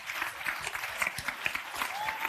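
An audience applauding: a dense, steady stream of many hands clapping.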